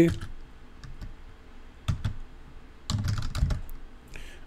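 Typing on a computer keyboard: scattered keystroke clicks, with a quicker run of keys about three seconds in.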